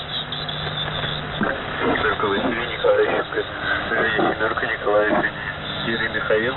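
Voice received over shortwave radio through static: garbled, unintelligible speech, cut off above the low treble like a radio channel. A low steady hum sounds under it for about the first second and a half.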